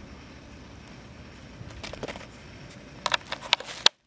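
Plastic spoiler mounting clips being handled and pressed into the new deck lid spoiler: a couple of faint clicks about two seconds in, then a quick run of sharp clicks near the end, over a quiet steady hiss. The sound cuts off suddenly at the very end.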